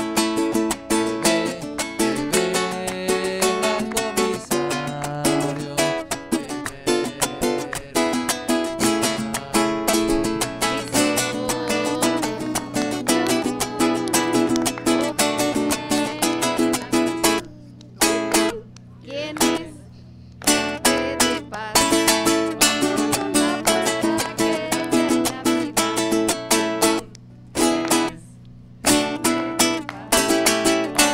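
Acoustic guitar strummed in a steady rhythm, accompanying a song. The playing breaks off briefly a few times in the second half.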